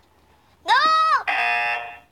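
About half a second in, a high voice says a short 'No' that rises and falls in pitch. It is followed at once by a steady electronic buzzer tone lasting under a second, the elimination buzzer that marks a contestant out.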